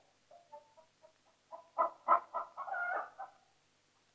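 Chickens clucking: a quick cluster of short calls from about one and a half to three and a half seconds in.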